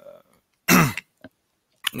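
A person clearing their throat once, a short, loud burst with a falling pitch.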